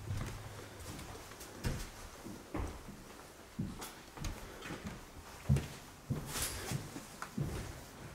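Footsteps walking over a floor littered with paper and debris: irregular thuds about once a second, some with a brief rustle or crunch.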